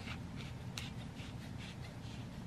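Dried herb rattling inside a small plastic shaker bottle, shaken in short strokes about twice a second, over a steady low hum.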